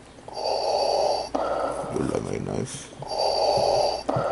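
Slow, heavy breathing close to the microphone, each breath in or out lasting about a second, with a short burst of rustling and clicks between breaths about halfway through.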